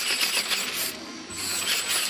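Hand-held RC ornithopter's electric-motor gear and cam drive running, its gears clattering in a rapid ratcheting buzz as the wings flap. The sound drops away briefly about halfway through, then picks up again.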